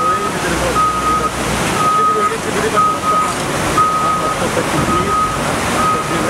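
Reversing alarm of a Caterpillar 740 articulated dump truck beeping steadily, about one beep a second, as it backs up, with the truck's engine running. Under it is the constant rush of the flooded river.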